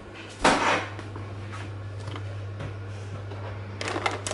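A kitchen drawer or cupboard being worked: one short sliding rush about half a second in, followed by a few faint knocks. Near the end come rustling and clicks as items are packed into a lunch bag. A steady low hum runs underneath.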